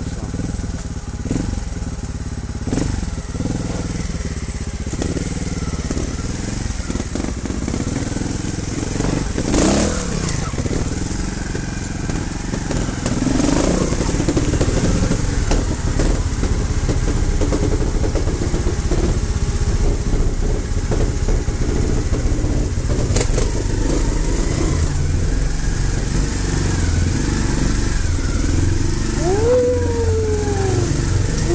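Trials motorcycle engine running at low speed as the bike is ridden through a narrow stone tunnel, getting louder about halfway through, with a couple of brief throttle changes.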